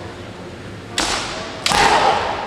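Kendo exchange with two sudden loud hits about a second in and near the end: bamboo shinai striking armour, with stamping footwork and shouted kiai. The second hit is the louder and rings on longer.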